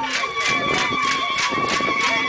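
Dancers' ankle rattles and stamping feet beating a steady rhythm of about four strokes a second, over a shrill held note and the voices of a dense crowd.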